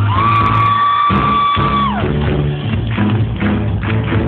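Live pop-rock band playing: the singer holds one long high note for about two seconds, then lets it slide down, over the band's instruments.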